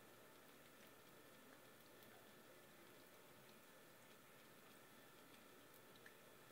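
Near silence, with faint soft ticks of a ragamuffin cat lapping water from a drinking glass.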